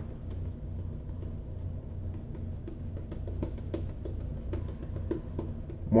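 Shaving brush working soap lather on the face: soft brushing with many small, irregular crackling ticks from the lather, over a steady low hum.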